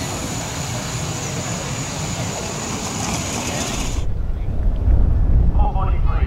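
Outdoor ambience with a steady thin high-pitched whine and faint distant voices. About four seconds in, the sound cuts abruptly to a louder low rumble of wind buffeting the microphone.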